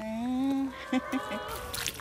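A child's voice drawing out "감사합니다" ("thank you") in a long, level, honk-like tone, followed by a few shorter held notes.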